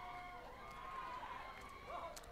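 Faint, distant shouting voices, with drawn-out wavering calls.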